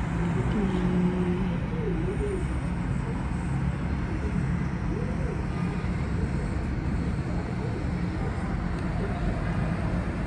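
Busy city road traffic: a steady rumble of cars, vans and trucks passing on a wide multi-lane road, with faint voices mixed in.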